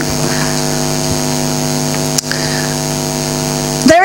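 Steady electrical mains hum and buzz in the sound system, one unchanging chord of low tones, with a single brief click a little after two seconds in.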